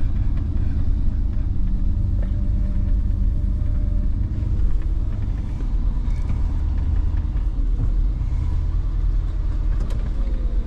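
Chevrolet rollback tow truck driving slowly, heard from inside the cab: a steady, low engine sound with no marked revving.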